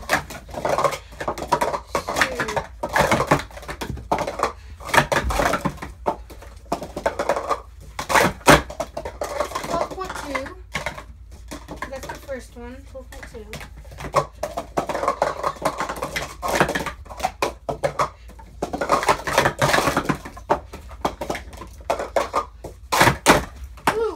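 Plastic sport-stacking cups being stacked and unstacked at speed, a rapid run of sharp clacks and clatters of cups hitting each other and the table during a timed cycle race.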